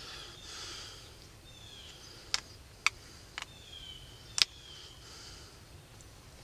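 Four sharp clicks as an antler tine pressure-flakes the edge of a stone arrowhead, small flakes snapping off; they fall between about two and four and a half seconds in, the last the loudest. Birds chirp faintly in the background.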